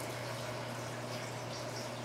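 Steady low hum with a faint even hiss of room background, with no distinct knocks or clicks.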